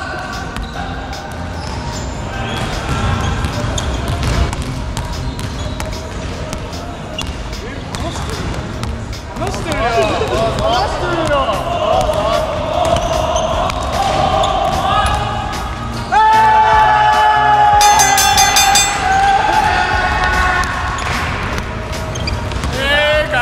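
Basketball dribbled on a hardwood gym floor, repeated bounces that echo in the large hall, with rubber-soled sneakers squeaking on the wood around the middle.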